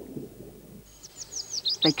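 A small songbird singing: a quick run of high, thin chirps, each falling in pitch and coming faster, starting about halfway through.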